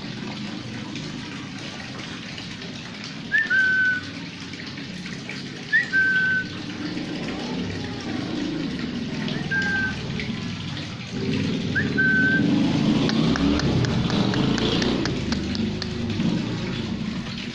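A person whistling four short calls a few seconds apart, each a quick upward flick followed by a briefly held note, to call a dog. Underneath runs a steady rush of water that grows louder past the middle.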